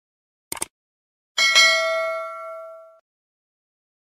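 End-screen subscribe animation sound effects: a quick double mouse click about half a second in, then a bright bell ding for the notification bell at about a second and a half, ringing out and fading away by three seconds.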